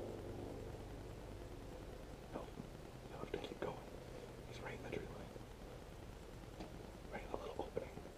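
Low steady hum with scattered soft rustles and clicks, in small clusters about two and a half seconds in, around three and a half, around five seconds, and again near the end.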